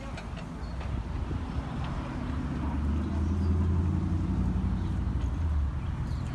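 A motor vehicle's engine running close by, a low hum that grows louder over the first few seconds and drops away shortly before the end.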